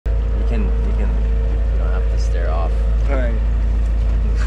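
A small boat's motor running steadily with a deep, even drone, with voices over it.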